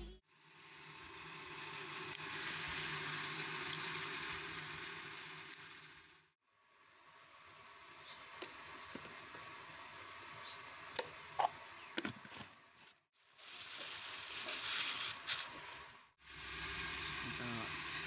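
Steady hiss of background noise in several short clips that cut in and out, with a few light clicks of a metal spoon against a ceramic bowl as seasoning is stirred into sliced cucumber, mostly before the middle.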